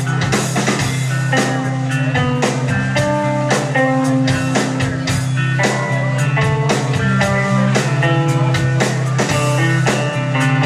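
Live instrumental rock from two bass guitars and a drum kit: a steady low bass line under a higher picked bass melody, with regular drum hits throughout.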